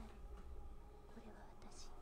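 Faint, soft-spoken female voice from the anime's soundtrack, speaking quietly and low in the mix, over a low room hum.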